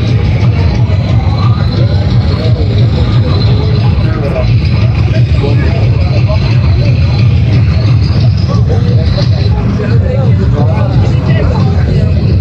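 Several people talking at once over a loud, steady low rumble.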